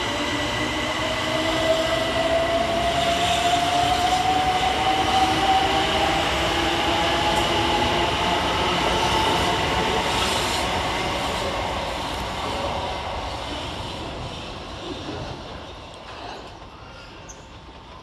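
Southeastern Class 375 Electrostar electric multiple unit pulling out, its traction motors giving a whine that rises slowly in pitch as it accelerates. The sound fades away over the last few seconds as the train draws off.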